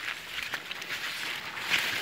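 Maize leaves rustling and brushing against the phone and body as someone pushes between the rows of the cornfield, in soft irregular scrapes.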